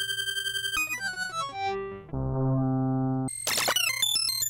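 Dave Smith hardware synthesizer played back from a recorded audio clip: a held, pulsing note, a quick run of falling notes, then a steady low sustained note about two seconds in, and a burst of rapid bright notes near the end.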